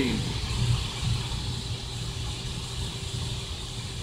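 Steady low hum of room tone, with a faint steady higher tone over it.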